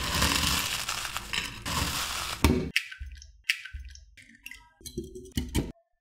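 Crisp potato chips being crushed by a gloved hand on a plate: dense continuous crunching for about two and a half seconds, then a run of separate short crunches that stop just before the end.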